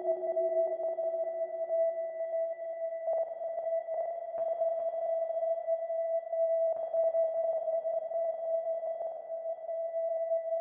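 Eurorack modular synthesizer, Doepfer analog modules through a Make Noise Mimeophon delay, holding one steady, pure-sounding drone note whose level wavers. A lower note fades away over the first two or three seconds.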